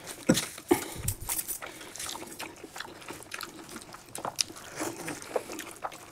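Close-miked eating sounds: chewing and wet mouth smacks of people eating biryani and tandoori chicken by hand, coming as irregular short clicks and smacks.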